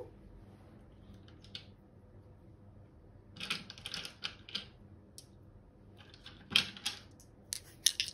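Small hard dice clicking and clattering together in a hand, in short clusters of clicks about three and a half seconds in, again near seven seconds and just before the end.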